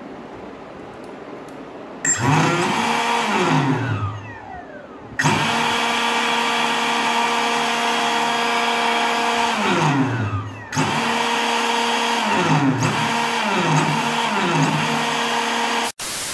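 BLDC drone motor spinning the impeller of a 3D-printed model jet turbine, throttled by joystick: it spins up about two seconds in, winds down with a falling whine, then jumps back to a steady high whine. Near the middle it winds down and up again, then several quick throttle dips each drop and raise the pitch before it cuts off at the end.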